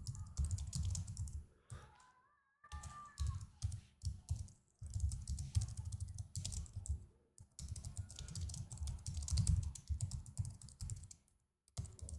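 Typing on a computer keyboard: quick runs of keystrokes broken by brief pauses.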